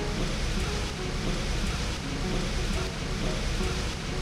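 Potato slices deep-frying in a large metal pot of oil: a steady, even sizzle.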